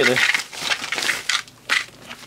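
Plastic and paper parts packaging rustling and crinkling in several short bursts as it is handled and pulled open by hand.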